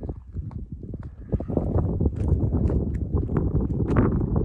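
Footsteps of a hiker on bare rock and loose gravel in an uneven walking rhythm, with a low rumble of wind on the microphone that grows louder about a second and a half in.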